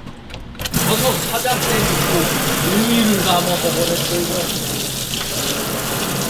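Kitchen tap turned on about a second in, its spray then running steadily into a stainless steel sink while neungi mushrooms are rinsed under it by hand.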